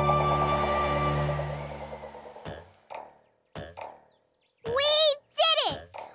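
Cartoon soundtrack music holding a long final chord that fades out over about two seconds. A few short sound effects follow, then near the end loud exclaiming voices with swooping pitch.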